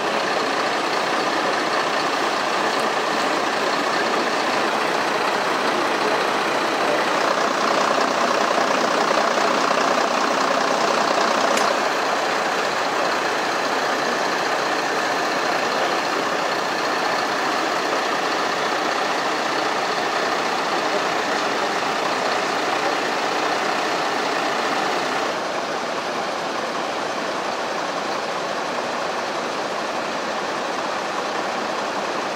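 Fire engines idling: a steady, continuous engine din with no distinct events. It is a little louder from about seven to twelve seconds in and slightly quieter for the last few seconds.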